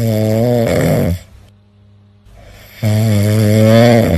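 Dog snoring: one long snore that ends about a second in, and a second one starting near the end.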